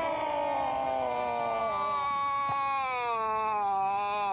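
A man's long cry of pain as a fish hook is pushed through his cheek: one unbroken wail whose pitch slowly sinks.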